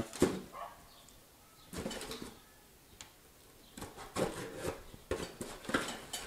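A small cardboard mailing box being handled and pulled open by hand: brief cardboard rustles and scrapes, with a denser run of tearing and scraping over the last two seconds.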